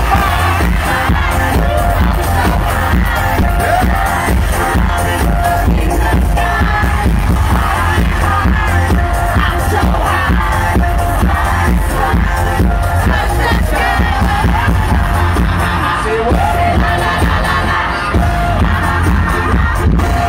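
Live K-pop concert music played loud over an arena sound system, with a singer on the microphone over a heavy bass beat. Crowd noise runs underneath, heard from among the audience.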